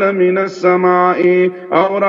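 A man chanting Quranic verses in melodic Arabic recitation, holding long steady notes and pausing briefly between phrases.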